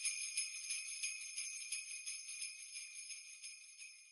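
Jingle bells shaken in a steady rhythm of about five shakes a second, ringing high and bright and fading gradually.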